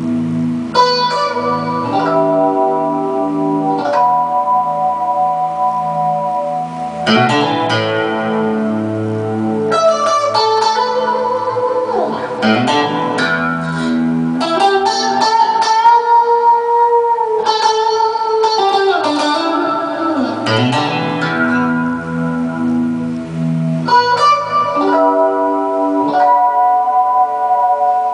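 Alesis X-Guitar electric guitar played unaccompanied in a blues improvisation: sustained lead notes and chords, with string bends that slide the pitch up and down and a long held bent note in the middle.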